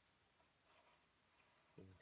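Near silence: quiet room tone with a faint, soft rustle a little under a second in, and a man beginning to speak near the end.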